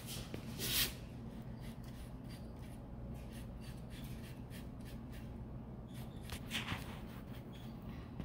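Faint scratchy strokes of a small paintbrush working yellow paint into a card stencil, over a steady low hum. There is a brief louder rustle about a second in and another near seven seconds.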